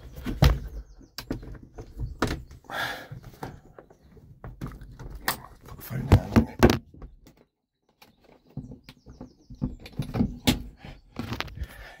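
Pop-top roof locking latches and fittings inside a VW T2 Bay camper handled by hand: a run of sharp clicks and knocks, with the loudest clunks about six seconds in and a break of about a second soon after.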